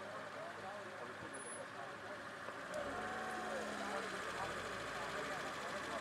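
Stopped cars idling on an open road, with a steady low engine hum about halfway through and indistinct voices talking in the background.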